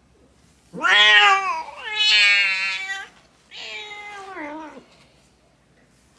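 A mother cat in labour gives three long, loud cries while delivering a kitten. The first rises and then falls, the second is held fairly steady, and the third, a little quieter, ends about a second before the close.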